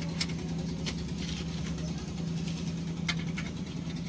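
An engine idling steadily with a low, even hum, with a few light clicks scattered over it.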